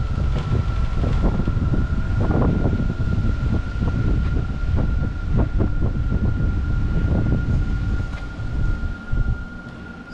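Strong wind buffeting the microphone, a dense low rumble that eases about nine seconds in. A thin steady high whine runs underneath.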